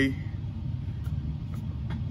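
A steady low hum of background noise, with no other sound standing out.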